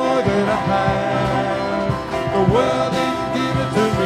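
Live church worship band playing a song: voices singing over acoustic guitar and keyboard, with sustained low bass notes.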